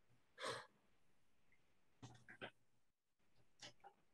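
Near silence, broken about half a second in by one short audible breath, with a few faint brief noises later on.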